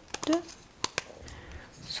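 Several sharp clicks of hard plastic and ceramic parts as a pepper grinder's removable ceramic grinding mechanism is pressed back into its tight-fitting plastic body, with a brief murmur of voice near the start.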